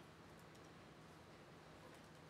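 Faint clicks of computer keyboard keys being typed, over near-silent room tone.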